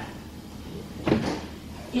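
A single short knock or clack about a second in, over low room tone.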